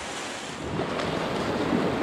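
Shallow sea surf washing over the sand, swelling about half a second in.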